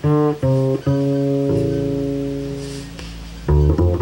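A jazz instrumental passage on piano and plucked double bass. Two short chords are struck, then one chord is held and left to fade for a couple of seconds, and a quick run of chords comes back near the end.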